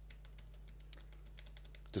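A quick run of faint keystrokes on a computer keyboard: the F7 key pressed repeatedly to page back through a system log.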